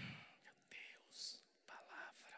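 A man whispering faintly into a handheld microphone: a few short, breathy bursts, with a hissing sound about a second in.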